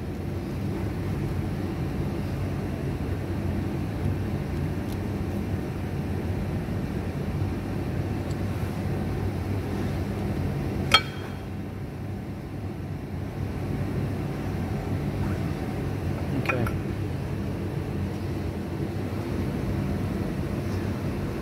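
A steady low machine hum, with one sharp metallic clink about halfway through and a fainter knock a few seconds later, from metal parts being handled at a wheel hub.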